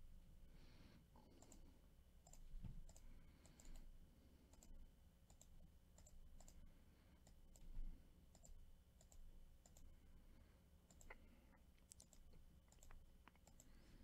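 Faint, irregular clicks of a computer mouse and keyboard over near-silent room tone.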